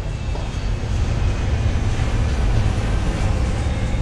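Thatched huts burning: a steady rumbling, hissing noise that keeps up evenly throughout.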